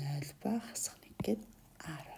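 A person speaking quietly in short phrases, with a single sharp click about a second in.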